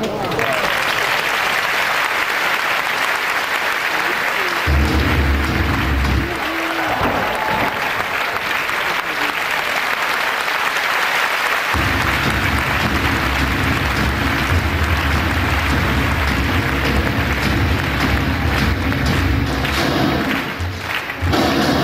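Audience applauding throughout. Music with a deep beat cuts in about five seconds in, drops out a second or so later, and comes back about halfway through to run under the clapping.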